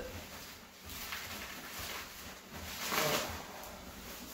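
Faint handling noise as a cardboard shipping box of beer cans and bottles is unpacked, with a louder rustle about three seconds in.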